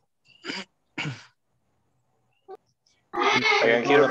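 A person coughing loudly into a video-call microphone, in a fit that starts about three seconds in, after two brief short sounds near the start.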